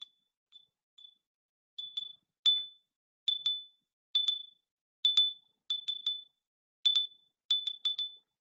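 A small handbell being rung: a series of short, single strokes, each one clear high tone that dies away quickly. The first few strokes are faint; from about two seconds in they are louder, some coming in quick pairs or threes.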